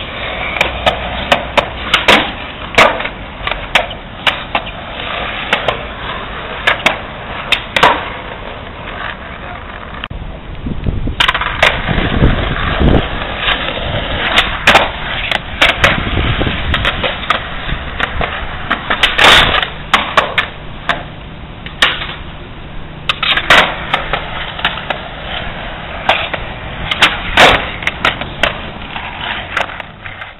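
Skateboard on concrete: polyurethane wheels rolling with a steady grinding hiss, broken by many sharp clacks of the board and wheels hitting the pavement as the skater pops, lands and catches the board. A deeper rolling rumble comes up about halfway through.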